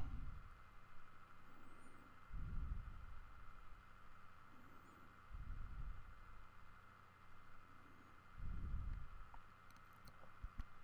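Quiet room tone on the narration microphone with a faint steady hum, broken by three soft low puffs about three seconds apart.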